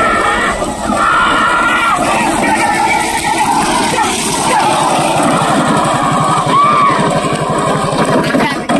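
Men shouting and calling out over a steady rumbling noise as bulls race a cart along a dirt road. The shouts are loudest in the first couple of seconds and again near the end.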